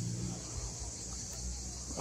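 Steady high-pitched insect chirring, with a low rumble underneath.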